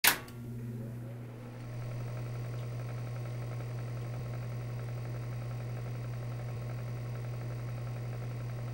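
A short click at the very start, then a steady low hum that holds even throughout.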